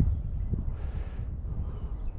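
Wind buffeting the microphone: a steady low rumble, with a brief soft hiss about a second in.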